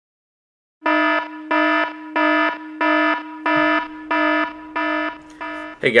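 Electronic alarm sound effect: a buzzing warning tone that starts about a second in and pulses about one and a half times a second, the last few pulses quieter, with a man's 'Hey' at the very end.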